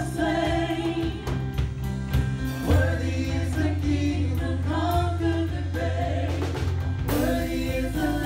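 Live gospel worship music: several women singing together at microphones over a band of keyboard, guitar and drum kit, with a steady beat and the bass line dropping to a lower note about three seconds in.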